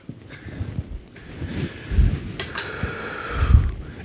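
Marker drawing on a whiteboard, with a faint steady squeak through a long stroke in the second half and a couple of low thuds.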